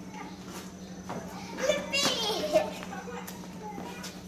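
A young child's high-pitched vocal outburst, a shout or squeal lasting about a second, starting about a second and a half in, amid other people's voices.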